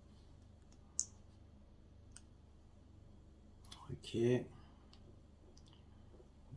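Small model-kit parts clicking together between the fingers as they are fitted: one sharp click about a second in, then a few faint ticks.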